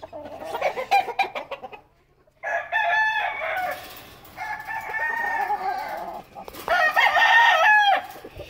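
Gamecock roosters crowing: three long crows one after another, the last the loudest, after a few light clicks at the start.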